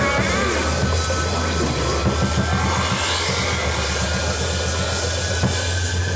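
Loud hard rock recording: drums and bass drive on steadily under a dense wall of sound, with notes sliding up and down.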